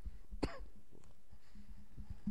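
A single short cough from someone in the congregation about half a second in, over a steady low hum and soft low thumps.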